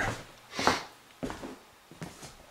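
Handling noise from moving about with a handheld camera: a short rustle about two-thirds of a second in and a soft knock a little later, then quiet room tone.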